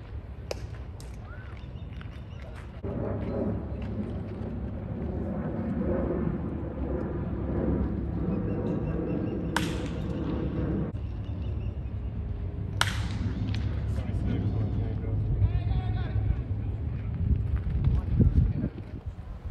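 Indistinct chatter of spectators in the stands, broken by sharp cracks of a baseball: one about half a second in, just after a pitch, and two louder ones about ten and thirteen seconds in, the first of them as the batter swings.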